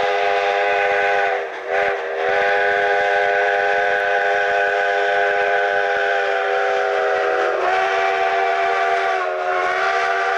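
Steam locomotive chime whistle blowing a long, held chord, broken off briefly about a second and a half in and then sounding again, its pitch sagging slightly twice near the end.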